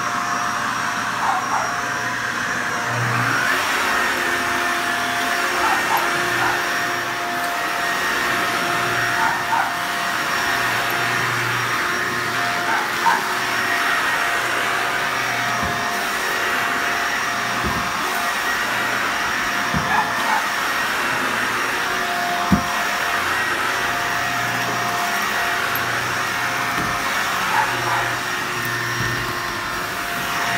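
Upright vacuum cleaner running steadily as it is pushed over carpet, with a steady whine over its rushing noise. A few short, light knocks come in the second half.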